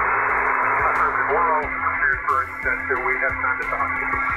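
A 10-meter upper-sideband signal comes through a ham radio transceiver's speaker as a narrow band of steady hiss over a low hum. From about a second in, a faint, muffled voice talks through the noise: the weak reply of the pilot on the other end of the contact.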